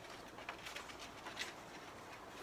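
Glue stick rubbed over paper in short strokes, with the light rustle and crinkle of the card being handled; faint, a few brief scratchy sounds.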